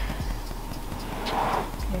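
Bedcovers rustling with a few soft knocks as a person shifts and settles on a bed, over a low steady hum.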